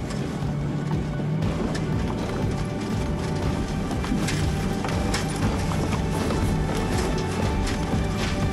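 Background music with held notes and light percussive hits.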